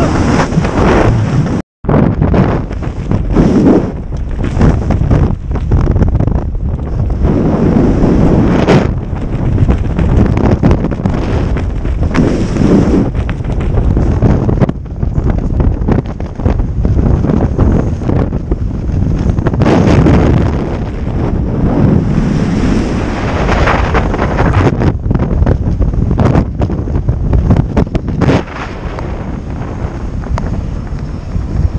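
Loud rushing wind buffeting the microphone of a camera during a tandem skydive, gusting unevenly. It cuts out for an instant about two seconds in.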